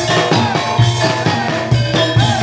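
Javanese gamelan ensemble playing jaranan accompaniment: bronze metallophones and gongs ringing over a steady low drum beat, a few strokes a second.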